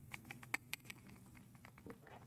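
Faint, irregular small clicks and ticks of ice cubes and a metal straw knocking against a glass of soda over ice as the straw is moved in the drink.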